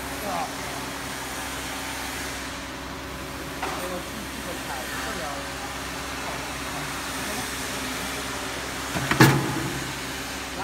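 Hydraulic punch press running with a steady hum from its pump motor. About nine seconds in, one loud, sharp stroke as the press head comes down on the cutting die and punches through the stack of plastic T-shirt bags.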